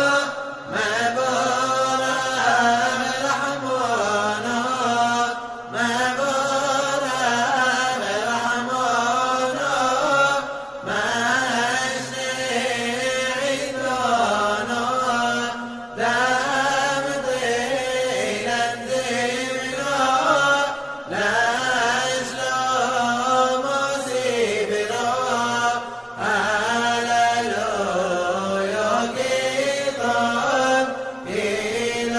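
A man chanting a Simchat Torah piyyut in the Yemenite style, with a winding, ornamented melody. The singing comes in phrases of about five seconds, with a short break between them.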